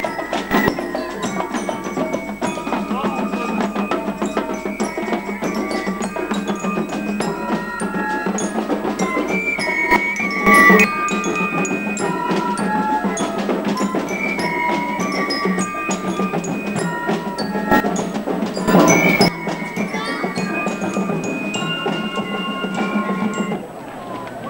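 Marching band playing in the street: snare drums beat steadily under a high melody of held notes, with two louder hits about ten and nineteen seconds in. The music cuts off just before the end.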